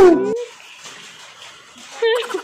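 A brief burst of laughter over music cuts off sharply, then a faint, steady sizzling hiss of rice frying in a wok on a gas stove.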